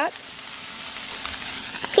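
Shrimp fried rice sizzling steadily on a Blackstone flat-top griddle.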